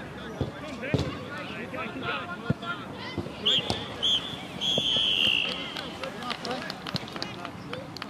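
Referee's whistle on a football pitch: three short blasts and then one longer blast, over distant players' shouts. Before the whistle, a few dull thuds of the ball being kicked.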